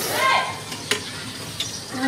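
A short, high-pitched call that drops in pitch at its end, followed about a second in by a single sharp click.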